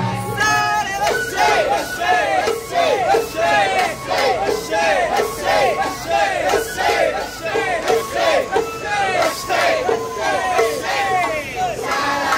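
Crowd of festival dancers chanting in unison, short rhythmic shouted calls about twice a second.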